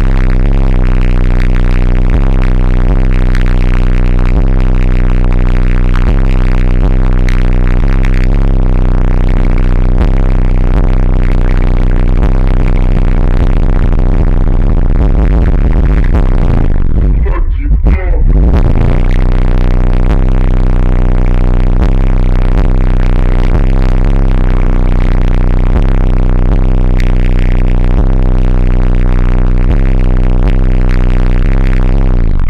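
Loud, bass-heavy electronic music played through a car audio system of four custom Fi BTL subwoofers in a fourth-order wall enclosure, heard inside the car's cabin. The deep bass stays strong throughout; a little past halfway the higher sounds drop out for about a second while the bass carries on.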